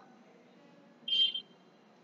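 Chalk squeaking on a blackboard as a line is drawn: one short, high-pitched squeal about a second in.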